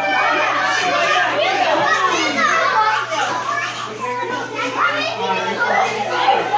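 Many children's voices chattering and calling out over one another, a dense steady hubbub of kids at play.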